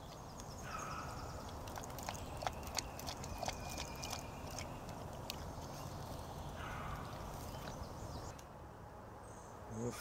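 Dog at its steel food and water bowls: faint, irregular clicks and taps over a steady low background hum.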